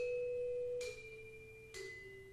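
Gamelan music in a quiet, sparse passage: three single notes struck on bronze gamelan instruments, about one a second, each ringing on and each a step lower in pitch than the one before.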